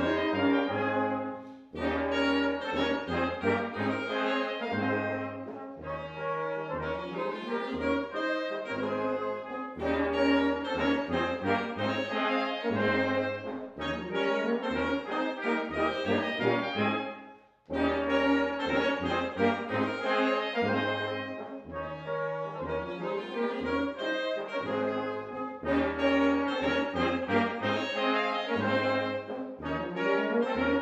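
Small Swiss folk-dance band of brass with clarinet playing a waltz, the tuba marking the beat in the bass. The music breaks off briefly between phrases about two seconds in and again about seventeen seconds in.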